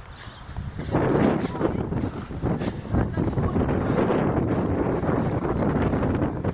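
Wind buffeting the camera microphone, a rough low rumbling noise that gets louder about a second in and stays steady, with handling noise from the moving camera.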